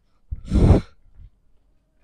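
One loud exhaled breath, a sigh of about half a second, close on a wireless lavalier microphone held at the mouth.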